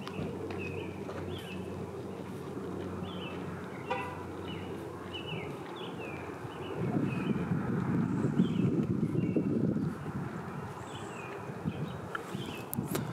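A small bird calling over and over in short chirps that drop in pitch, over a low hum of traffic. A louder low rumble of a passing vehicle swells in about seven seconds in and fades near ten seconds.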